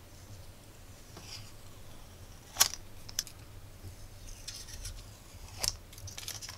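Protective backing film being peeled off a small acrylic case panel by hand: faint rustling with a few sharp clicks, the loudest about two and a half seconds in.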